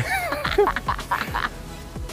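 A woman laughing heartily in bursts, over background music with a steady beat.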